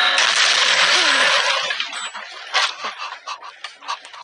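Cartoon gore splatter sound effect as a character bursts into blood: a sudden loud burst of noise that holds for about a second and a half, then trails off into scattered crackles.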